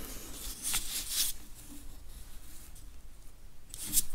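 Faint handling sounds as a cork ring seal is pressed onto the front flange of an Eisemann magneto: short scratchy rubbing about a second in, and a small knock near the end.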